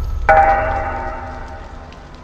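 A single bell-like tone struck about a quarter second in, ringing and fading away over a dying low rumble.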